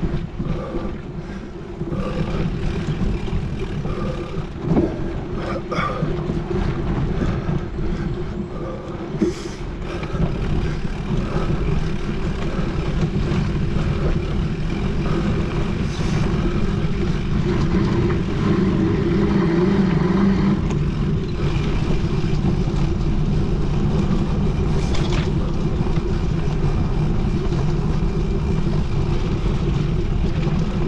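Mountain bike ridden along a dirt forest trail, heard from a camera mounted on the rider or bike: steady rumble of knobby tyres rolling and wind on the microphone. Occasional sharp knocks from bumps in the trail are the loudest moments.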